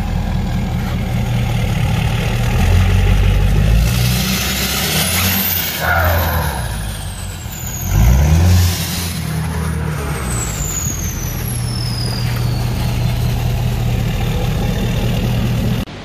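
Ford Super Duty pickup's Power Stroke diesel engine heard at the exhaust pipe, running loudly and revved up a few times, the deep note rising and swelling about six and eight seconds in. Faint high whistles fall in pitch after the revs.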